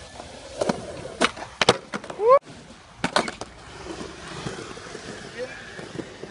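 Skateboard on concrete flatground: a series of sharp wooden clacks of the board popping and landing, with a cluster of strikes in the first two seconds and another about three seconds in. A short rising shout from a person just after two seconds is the loudest sound.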